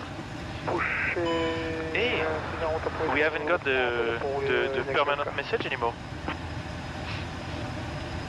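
A man's voice talking, untranscribed, over the steady low rumble of the Airbus A380 in its cockpit as the aircraft taxis.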